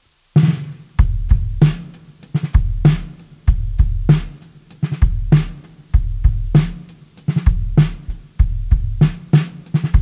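Drum kit starting a song alone: after a silent start, kick drum and snare come in suddenly about a third of a second in and play a steady repeating groove, with deep low booms under the kick.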